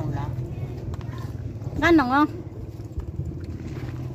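A vehicle engine idling steadily, with one short voice sound about halfway through.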